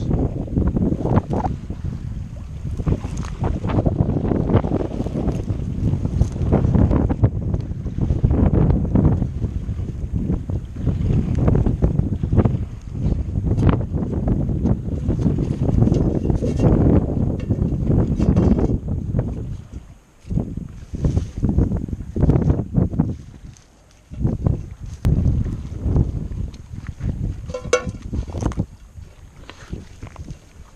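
Wind buffeting the microphone in heavy, uneven gusts, over rustling and steps through salt-marsh grass and mud. After about 20 seconds the buffeting comes in shorter bursts with quieter gaps.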